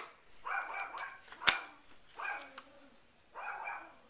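A dog yelping three times, about a second apart, with a sharp click of plastic about a second and a half in as the white iPhone docks are handled.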